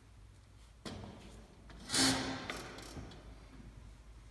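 Footsteps and the handling of a piano bench as a player sits down at a grand piano, with one louder brief scrape about two seconds in and a few faint clicks after it.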